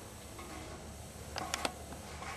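A few light clicks and knocks close together about one and a half seconds in, from boots and gear on the steel ladder of a tower deer stand during a climb down, over low background noise.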